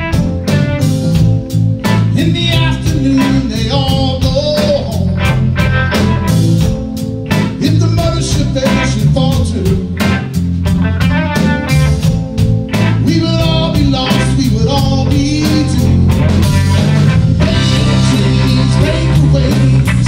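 A live rock band playing a song: a drum kit keeping a steady beat under electric guitar and bass, with a man singing.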